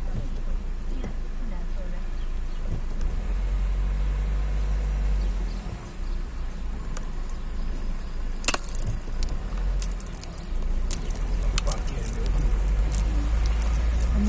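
Car cabin noise while driving slowly: a steady low engine and road rumble, with scattered sharp clicks in the second half.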